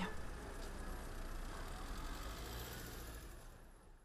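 Street traffic: cars passing with a steady low hum that fades away near the end.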